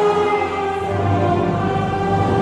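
Choir and orchestra performing a sustained passage of choral church music, recorded live in a cathedral; the lower parts swell about a second in.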